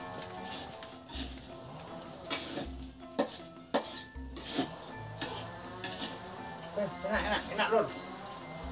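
A metal spatula scraping and clinking in a wok as fried rice is stirred over the fire, with a light sizzle, under background music with a steady low beat.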